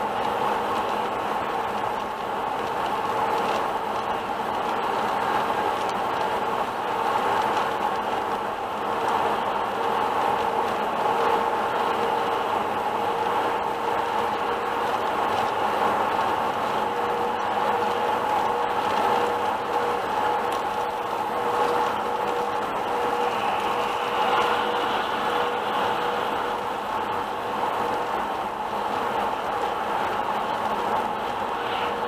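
Steady road noise of a car driving at highway speed, heard inside the cabin: tyre and engine drone with a faint steady hum running under it.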